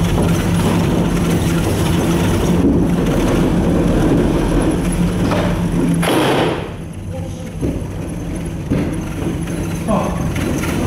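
Gondola cabin passing over a pylon's sheave rollers, heard from inside the cabin: a steady rumbling hum with clattering. About six seconds in there is a short rush of noise, and then the sound drops and stays quieter as the cabin moves off the tower onto the open cable.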